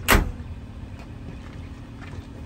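A Ford Ranger pickup's tailgate slammed shut: a single loud bang just after the start that dies away quickly.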